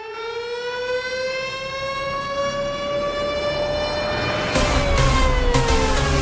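A siren-like tone with many overtones, gliding slowly upward and then starting to fall, part of the video's soundtrack. About four and a half seconds in, a heavy electronic dance beat comes in under it.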